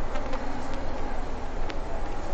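Steady background noise from an open microphone at a petrol station forecourt: a low, even buzzing hum with no distinct events.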